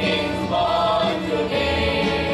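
Mixed choir of men's and women's voices singing a Christmas carol in three-part harmony, holding and changing notes together.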